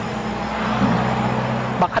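Steady road-traffic noise with a low engine hum from passing vehicles, picked up through a wireless lapel microphone.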